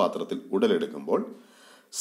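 Speech only: a person talking in a lecture voice, followed by a short, faint intake of breath near the end.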